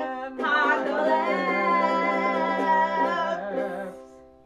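A woman singing one long held note over a sustained Hohner piano accordion chord, with ukulele strumming beneath. The singing and chord swell in about half a second in and fade just before the end.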